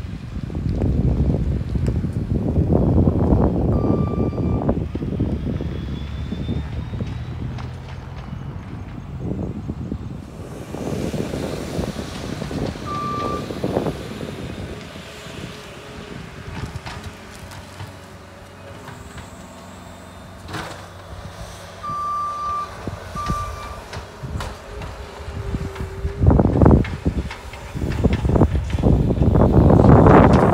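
Skid-steer loader working on a construction site: its engine runs in the background and its backup alarm gives a few short beeps, single ones about 4 and 13 seconds in and a quick pair near 22 seconds. Heavy low rumbling noise swells and fades throughout, loudest near the start and end.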